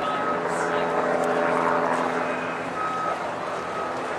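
Steady engine drone with a high reversing-alarm beep sounding several times, over people talking.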